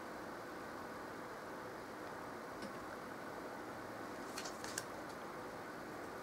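Quiet room with a steady background hum, and a few faint light clicks from about halfway through as tarot cards are handled.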